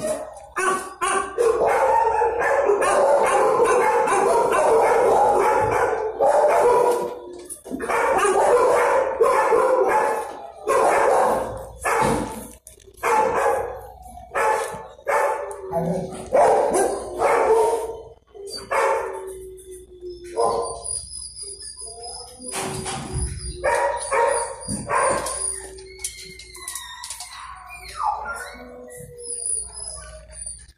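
Dogs barking in shelter kennels: a dense, continuous chorus of barking for roughly the first ten seconds, then separate barks with longer drawn-out whines or howls between them.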